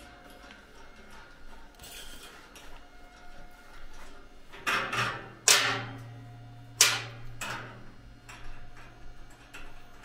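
A few sharp metallic clanks and clinks, each ringing briefly, as a caster wheel is knocked into place against an aluminum table frame; the loudest come about five and seven seconds in. A low steady hum starts about halfway through.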